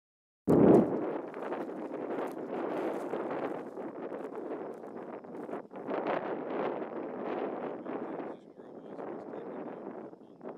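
Gusty wind buffeting the built-in microphone of a Canon Vixia camcorder: a loud, rough rush of noise that starts abruptly about half a second in and rises and falls with the gusts.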